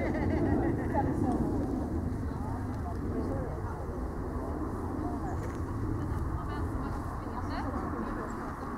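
Faint, indistinct voices outdoors over a steady low rumble.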